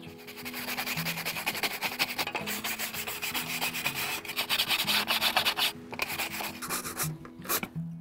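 A stiff-bristled scrub brush scrubbing loose crust off a portable gas grill's metal heat shield in rapid back-and-forth strokes, which ease off near the end.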